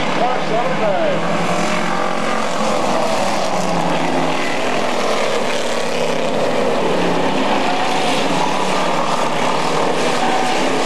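Several street stock race cars' engines running hard in a pack on an asphalt oval: a loud, steady din of many engines at once, their pitch rising and falling as the cars go by.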